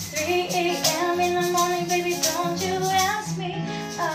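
A woman singing a Cantonese R&B song, her voice gliding between notes, over a strummed acoustic guitar.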